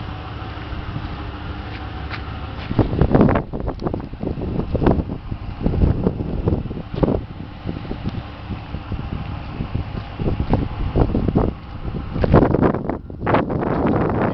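Wind buffeting the microphone in irregular gusts, starting a few seconds in, over a steady low background noise.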